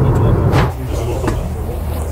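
Low road and engine rumble inside a moving car's cabin, cutting off suddenly just over half a second in. After it comes a quieter background with faint voices.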